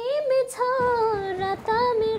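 A high voice singing a slow melody in long held notes that bend slightly in pitch, dipping a little lower past the middle and rising back near the end.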